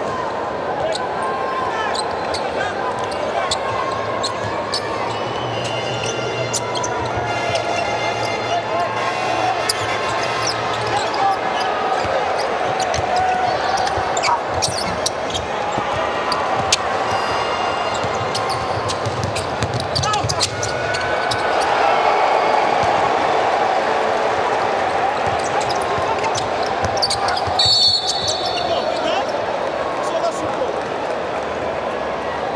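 Basketball game in an arena: crowd hubbub with a ball dribbling and shoes squeaking and slapping on the hardwood court. A short high whistle sounds near the end.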